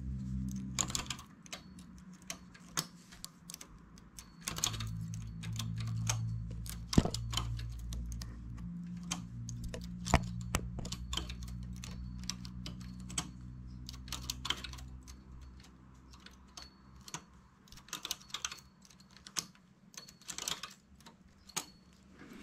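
Irregular light clicks and taps of the metal latch needles and a hand-held transfer tool on a domestic flatbed knitting machine, as stitches are moved from needle to needle to form lace eyelets.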